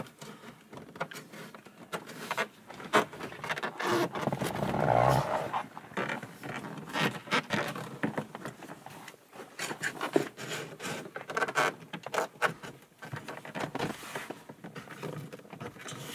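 Masking tape being pulled off the roll, torn and pressed down by hand onto plastic dashboard trim: irregular crackling, tearing and rubbing with many small sharp clicks.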